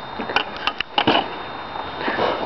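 Several light, quick wooden knocks and clicks in the first half, from parts of a broken wooden chair being handled and set down.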